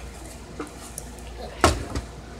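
A small acoustic guitar hit once by a child's hand, a single sharp knock-like strum about one and a half seconds in, over faint room noise.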